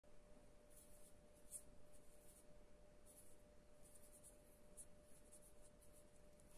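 Faint ASMR hand sounds: fingers and palms brushing and rubbing together in short, soft, scratchy strokes, about once or twice a second, over a faint steady hum.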